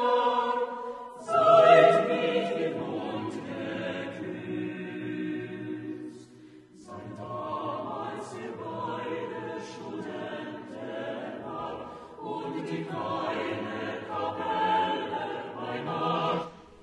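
Recorded choral music: a choir singing held chords, with a short break about six and a half seconds in.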